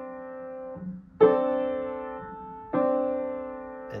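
Piano played slowly with both hands. A held chord rings out and is released about a second in. Then two more chords are struck one after the other, each held and left to ring.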